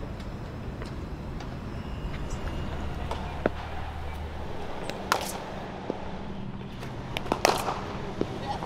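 Sharp cracks of a cricket bat striking the ball in practice nets: a faint one about three seconds in, a loud one about five seconds in and a quick few near the end, over a steady low background rumble.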